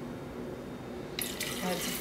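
Guava mango punch juice poured from a carton into a plastic blender cup, the stream of liquid starting suddenly a little over a second in and running on.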